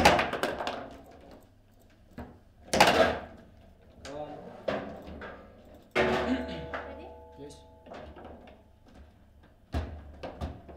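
Table football play: hard knocks of the ball and rods on the table, a loud one right at the start and another about three seconds in, with smaller clacks between. About six seconds in comes a clatter with a steady ringing tone that lasts about two seconds.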